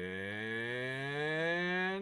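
A man's voice drawing out a single long 'and…' as one unbroken vowel, its pitch rising slowly and steadily from low.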